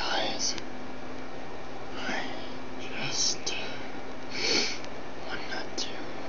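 A man whispering in short breathy bursts, over a steady low hum and hiss.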